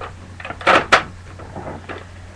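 Two sharp plastic clacks close together, about a second in, from a Nerf Recon CS-6 dart blaster being handled, with lighter rattling of the plastic body around them.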